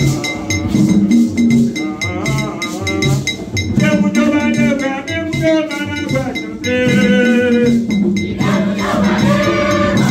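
Haitian Vodou ceremonial song: voices singing, led by a singer on a microphone, over a steady drum beat with percussion keeping time.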